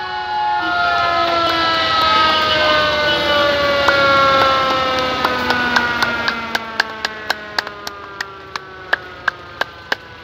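Fire truck siren winding down: several tones fall slowly in pitch and fade away. From about halfway, a steady clicking at about three a second comes through.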